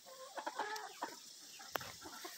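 Chickens clucking quietly in a few short calls, with a single sharp click near the end.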